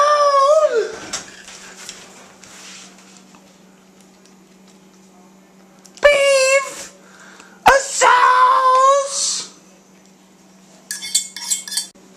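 Metal pan knocking and clinking against a glass baking dish as browned meat sauce is scraped into it, with a cluster of bright clinks near the end. Long, wavering vocal cries come at the start, about six seconds in and again from about eight seconds.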